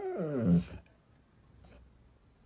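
A husky-type dog giving one drawn-out, voice-like howling vocalization that slides down in pitch and ends within a second, the husky 'talking' that is heard as the dog saying 'good boy'.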